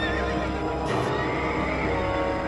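Horses galloping with hoofbeats on dirt and a horse neighing, over background film music.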